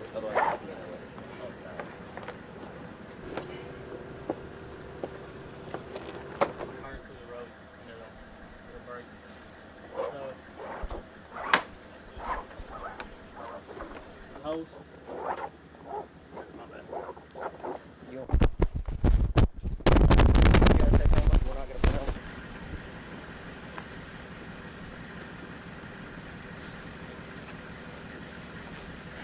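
Quiet background talk with scattered short clicks and scrapes as rope and a plastic SKED stretcher are handled. Past the middle comes a loud rumbling burst of noise lasting a few seconds, followed by a steady low hum.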